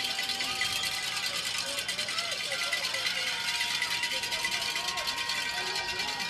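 Open-air football stadium ambience: a steady hiss of crowd and field noise, with music holding long steady notes and faint distant voices underneath.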